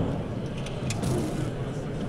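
Weighted 75-pound membrane roller rumbling as it is rolled over a freshly laid roofing ply, pressing it into the adhesive for full adhesion, with a couple of light clicks and crowd chatter in the background.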